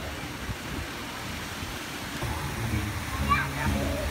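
Fountain jets splashing steadily, with people's voices mixed in; music with steady low notes comes in about halfway through.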